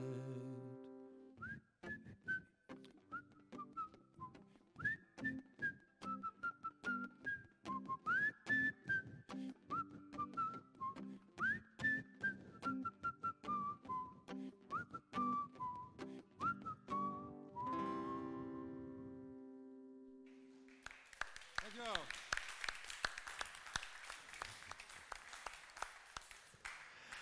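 A man whistles a melody over strummed acoustic guitar, ending on a chord that rings out about eighteen seconds in. An audience then applauds.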